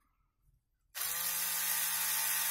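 Small electric drill starting up about a second in, its motor spinning up and then running steadily as the bit drills into thin plastic.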